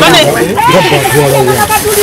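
Several people's voices talking over one another, loud, with a steady hiss behind them.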